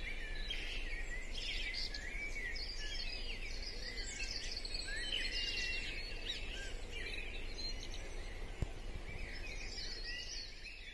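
Many birds singing at once in a dawn chorus, short overlapping whistles, trills and chirps, over a faint low steady rumble. A single sharp click sounds near the end.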